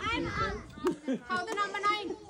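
Several people talking at once, children's voices among them, with one short click just under a second in.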